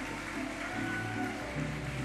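Guitar-led music with plucked strings, heard through the steady murmur of a crowded hall.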